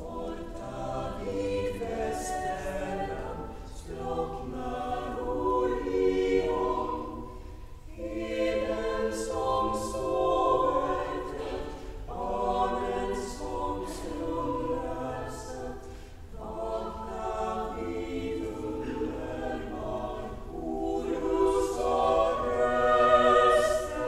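Girls' choir singing in phrases of about four seconds, with brief breaks between them.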